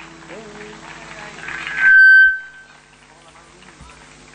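Quiet lull with a low steady hum, broken about two seconds in by a loud, high whistle-like tone lasting about half a second.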